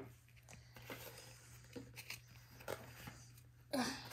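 Faint, scattered clicks and scratches of fingernails picking at a small sticker to peel it off its sheet, with a short frustrated "ugh" near the end.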